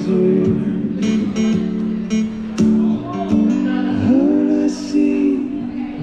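Acoustic guitar strummed steadily while a man sings long held notes, his voice sliding up into a new note about four seconds in.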